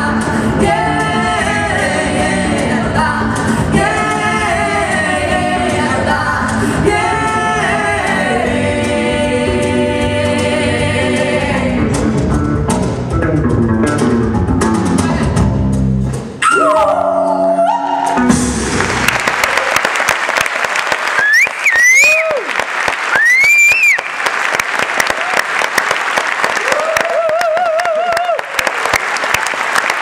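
Two women singing a duet live with electric bass and band, the song building to its final bars and ending on a long held note about two-thirds of the way through. Audience applause starts under the last bars and then swells into full applause with cheering.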